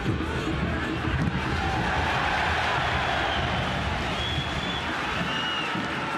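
Football stadium crowd noise that swells about a second and a half in and eases again after about four seconds, as the home side attacks near the box.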